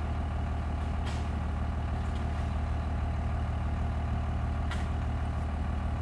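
Vehicle engine idling steadily, a low hum heard from inside the cab, with a couple of faint knocks.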